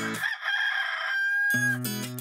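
Strummed guitar music breaks off for a single drawn-out call that ends on a held, steady note. The guitar starts again about one and a half seconds in.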